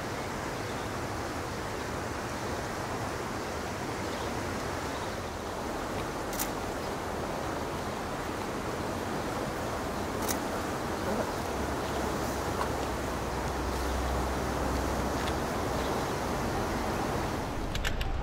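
Steady rushing of the fast-flowing Aare river, an even noise without a break, with a low rumble swelling in the second half.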